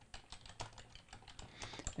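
Computer keyboard being typed on: a quick, irregular run of faint keystrokes.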